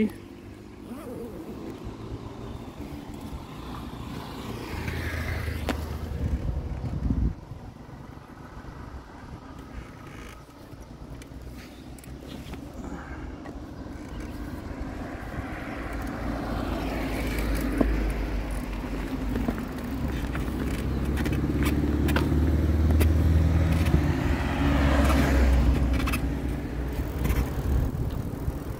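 Road traffic: several vehicles pass one after another, each rising and fading, over a low rumble of wind on the microphone.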